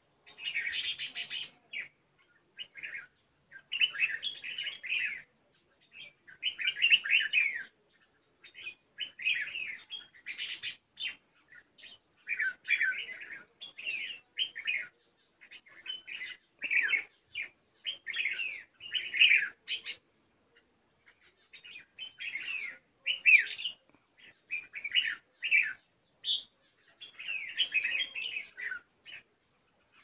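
Red-whiskered bulbuls calling: a steady run of short, liquid chirping phrases, one after another every second or so, with brief pauses between them.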